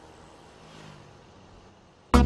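Faint, steady road-traffic noise, with a low hum rising briefly about halfway through.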